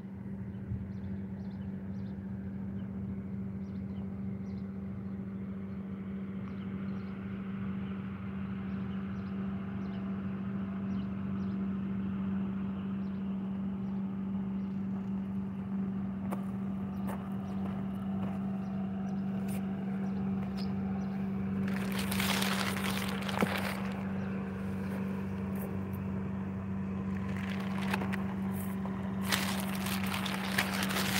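Steady low hum of a motor running at an unchanging pitch, slowly growing louder. Bursts of rustling and scraping close to the microphone come about 22 seconds in and again near the end.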